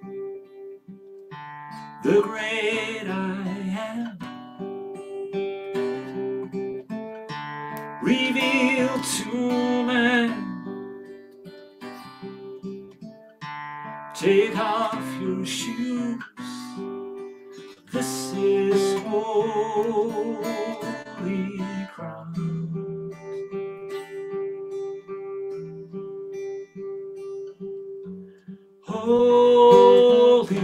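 A man singing a slow worship song, accompanying himself on a Guild archtop guitar; sung phrases come and go over held guitar chords.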